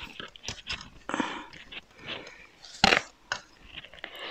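Paper and greyboard being handled on a work table: irregular rustles and light scrapes, with one sharp tap about three seconds in.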